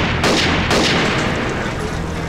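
A volley of gunshots from several police handguns, fired in quick succession at the start and about half a second in, each shot ringing out and dying away.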